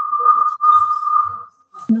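Audio feedback in a video-call line: a single steady high-pitched tone that fades out about a second and a half in, with faint voices beneath.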